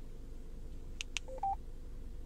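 Two sharp clicks from the Yaesu FTM-100DR's front-panel controls, then two short electronic beeps, the second higher-pitched, as a digit of a phone number is entered into an APRS message.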